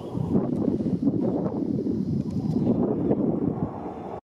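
Twin-engine jet airliner flying low overhead: a steady, loud rush of engine noise.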